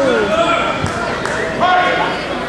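Voices shouting and calling in a large echoing hall, with a dull thump about a second in.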